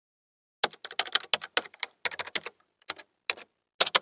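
Computer keyboard typing: a quick, uneven run of keystrokes starting about half a second in, with a few short pauses.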